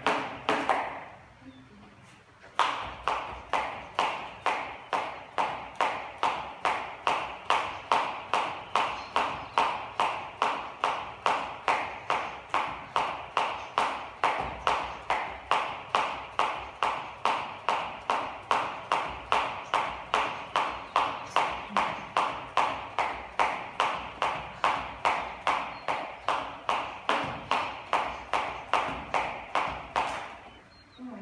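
Jump rope skipping at a steady pace, about two turns a second, each turn a sharp slap of the rope with bare feet landing on a yoga mat. There is a short stop about a second in before the rhythm starts again.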